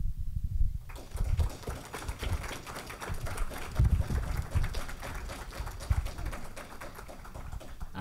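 Audience applauding: many people clapping, the clapping filling in about a second in and thinning a little near the end.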